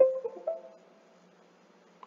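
A computer's two-note chime, a lower note then a higher one about half a second later, dying away within about a second: the USB device-connect sound as the drone's flight controller comes back after rebooting.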